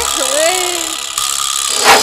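Break in a DJ remix of a Rajasthani love song: the heavy bass beat drops out and a lone voice glides up and down, then a short swell of noise near the end leads back into the beat.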